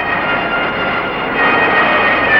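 A car driving past, its engine and road noise swelling as it comes closer and loudest in the second half. Held notes of background music sound along with it.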